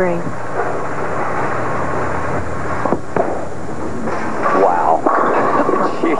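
Bowling ball thrown with a thump about halfway through, rolling down a wooden lane and crashing into the pins near the end, over the hubbub of a bowling alley crowd.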